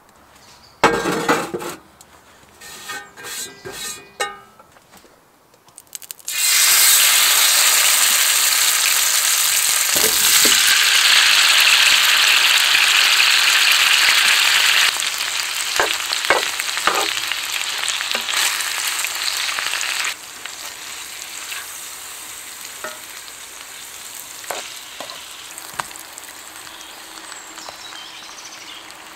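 Pork loin and potato chunks frying in a hot cast iron pan. After a few knocks and some clatter, a loud sizzle starts suddenly about six seconds in, then eases in two steps, with occasional clicks from the spoon in the pan.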